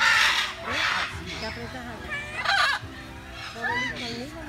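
Blue-and-yellow macaws squawking: three loud, harsh calls, the first at the very start, the next about a second in and the last about two and a half seconds in.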